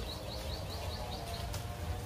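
A small bird chirping, a short high call repeated about five times a second that fades out about one and a half seconds in, over a steady low rumble.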